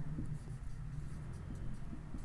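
Marker pen writing on a whiteboard: faint, scratchy strokes as a word is written out, over a low steady hum.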